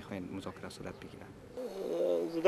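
Men's speech: one voice trails off, and after a short quieter stretch a second man starts talking near the end.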